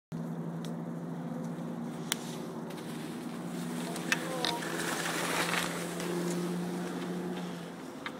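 Skis sliding and hissing over snow, loudest in the middle, with a couple of sharp clicks, under a steady low hum that fades near the end.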